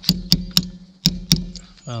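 Five sharp metallic knocks in about a second and a half, from a hammer striking a spark plug socket tool on a Yamaha YZ250 two-stroke's cylinder head, each with a short ring. The strikes are to break loose a stuck spark plug.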